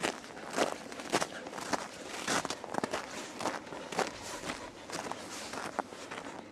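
Footsteps crunching through dry snow at a steady walking pace, about two steps a second.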